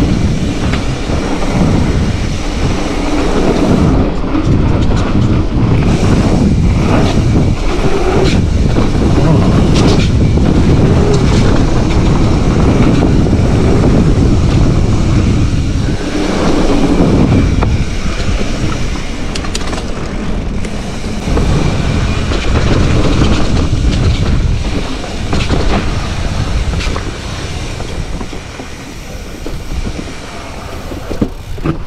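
Mountain bike riding fast down dirt singletrack: a steady rush of wind and tyre noise, with frequent rattles and knocks from the bike over bumps and roots, easing a little near the end.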